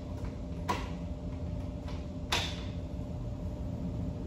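Glass entrance door being opened, giving two sharp clicks about a second and a half apart, the second louder with a short ring, over a steady low room hum.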